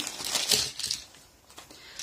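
Crinkling rustle with a few light clicks as plastic nail soak-off clips are handled and set down on a paper towel; it dies away about a second in.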